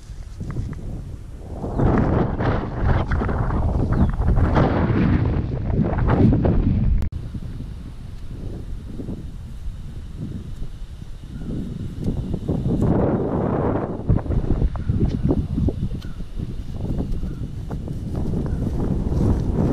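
Wind buffeting the camera's microphone: a low rumble that swells in a long gust about two seconds in and cuts off sharply near the middle, then swells again in a shorter gust later on.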